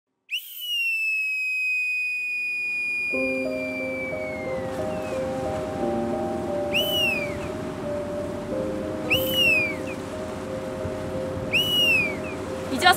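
A boatswain's pipe sounds one long high note that falls away at its end, then three short rising-and-falling calls about two and a half seconds apart. Slow sustained musical notes come in underneath about three seconds in.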